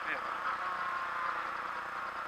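Renault Clio rally car's engine and road noise heard from inside the cabin, steady and without any rise in revs. The engine is not picking up the throttle, which the crew suspects is from low fuel.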